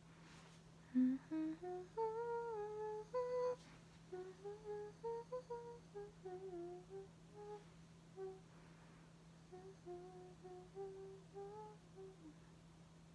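A young woman humming a tune with closed lips: a louder run of rising notes over the first few seconds, then a softer, wandering melody until the end.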